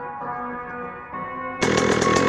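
A rap track plays; about a second and a half in, a 2018 KTM 85 two-stroke dirt bike engine cuts in loud over it, running with a fast, even pulse.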